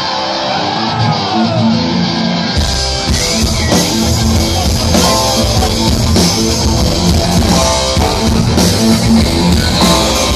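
Punk rock band playing live, loud: electric guitar alone at first, then the drums and bass come in about two and a half seconds in and the full band plays on.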